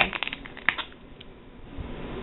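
Small zip-top plastic bag being pulled open by hand: a quick run of crinkles and clicks within the first second, followed by faint handling.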